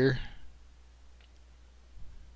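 A single faint computer mouse click about a second in, over a low steady hum, after the tail of a spoken word.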